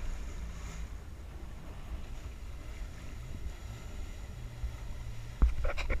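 Low rumble of a jet ski engine at idle, with wind buffeting the microphone. Near the end the rumble suddenly gets louder.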